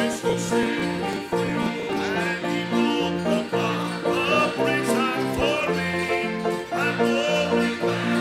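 Acoustic bluegrass-style gospel music played without singing: strummed acoustic guitar and other plucked string instruments in a steady, even rhythm.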